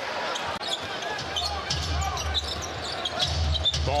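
Live basketball game sound on a hardwood court: a ball being dribbled and short, high sneaker squeaks, over a steady low arena rumble and crowd noise.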